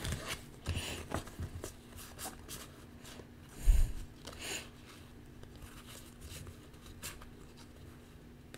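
Tarot cards being picked up and shuffled by hand: a run of light crisp flicks and rubs of card on card, with one louder knock about three and a half seconds in.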